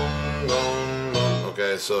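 Electronic keyboard in a piano voice holding a low note with a chord over it, then striking a new low note just over a second in; a man's voice comes in near the end.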